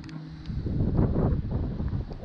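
Wind buffeting the camera's microphone, a rough, uneven low rumble that swells about half a second in.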